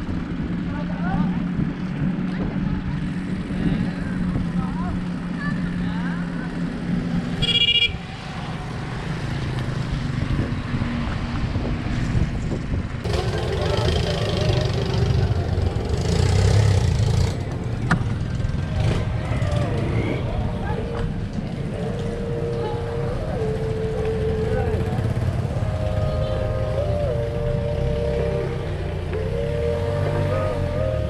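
Wind on the microphone and road noise from a bicycle ride, with motor traffic passing. A short horn toot comes about eight seconds in.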